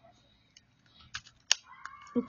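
A few light plastic clicks from a BB pistol being handled and taken apart by hand. The sharpest, loudest click comes about a second and a half in.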